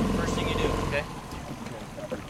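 A boat motor running steadily, then dropping away suddenly about a second in as it is throttled down.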